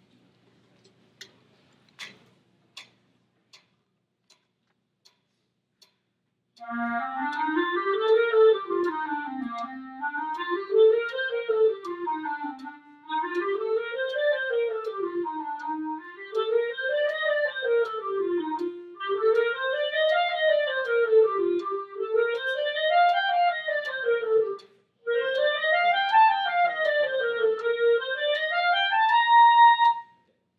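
A few evenly spaced metronome clicks, then a section of clarinets playing a scale exercise in unison: quick runs up and back down, each about three seconds long and each starting a step higher. There is a brief break near the end and a final held note.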